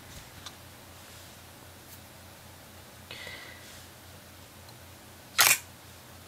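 Quiet handling noise with a faint brief rustle about three seconds in, then one short, sharp knock near the end as the MacBook Pro's heat sink is handled and set onto the logic board.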